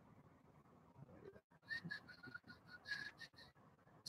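Near silence: room tone, with a faint, thin, whistle-like high tone coming and going in the middle.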